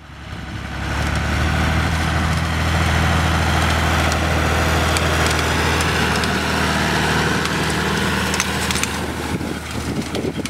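John Deere 3040 tractor's diesel engine running steadily while its rear-mounted rotary tedder turns dry hay, giving a hiss of crisp hay over the engine's low note. The sound fades in at the start, and the engine note thins near the end.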